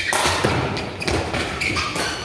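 Thuds of a sepak takraw ball being kicked during a rally, a few sharp knocks with the strongest right at the start, echoing in a large sports hall.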